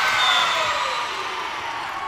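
Gym crowd and players cheering and shrieking after a point is won, many high voices at once, loudest at the start and easing off.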